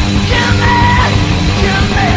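A 1993 rock band recording playing loudly: a dense, steady beat underneath, with a high held note about half a second in.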